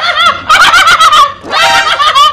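A woman laughing loudly in high-pitched, wavering cackles, in three bursts.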